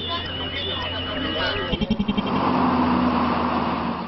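Voices with a steady high tone and a low hum underneath. About halfway through, after a quick run of clicks, a vehicle engine sound takes over as a steady, louder rushing noise.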